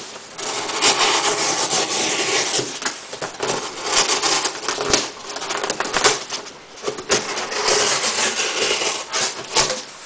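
Gerber Profile knife's 420HC steel blade slicing through cardboard in repeated long strokes, about one a second, with a couple of short lulls.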